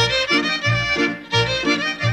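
A lively folk tune played by a small string band: a fiddle carries the melody over a double bass plucking a steady beat of about three notes a second. The band comes in loudly right at the start after a quieter passage.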